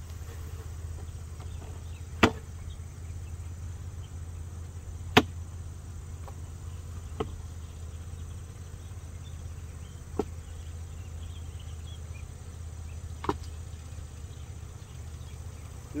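Plastic hive lid and wooden hive box knocked together as a swarm of honeybees is tapped off the lid into the box: five sharp, separate knocks a few seconds apart, the loudest about five seconds in, over a steady low hum.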